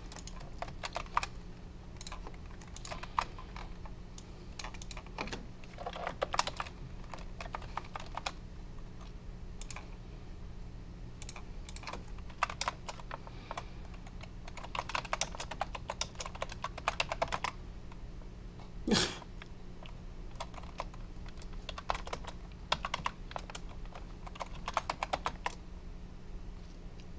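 Typing on a computer keyboard in irregular bursts of keystrokes, some runs fast and dense, over a steady low hum. A short, louder non-click noise breaks in about two-thirds of the way through.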